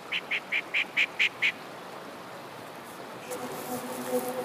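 A bird calling: a quick run of seven short, evenly spaced notes over about a second and a half, over the faint rush of the river.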